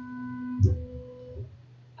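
Stepper motors of an Ortur Laser Master 2 Pro laser engraver moving the laser head to frame the design's outline: a steady whine that jumps to a higher pitch with a small knock about half a second in, then stops shortly before the end.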